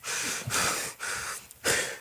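A man panting hard, about four heavy breaths in a row, acting out being out of breath and shaky from exhaustion.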